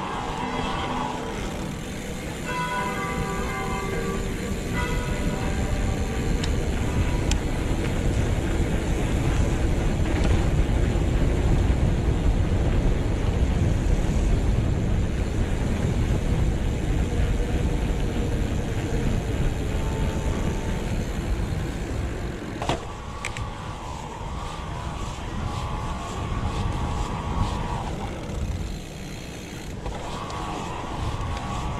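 Wind rushing over the camera microphone as a mountain bike rolls fast down an asphalt road, a deep continuous rumble that builds toward the middle and eases later. Brief steady high whines come in near the start and again about three-quarters through.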